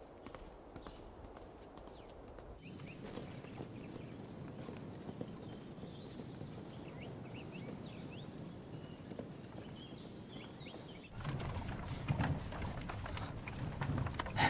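A horse walking on a dirt path, hooves clip-clopping steadily, with high birdsong chirps over it. About three seconds before the end it cuts to the louder rattling rumble of a horse-drawn carriage rolling along.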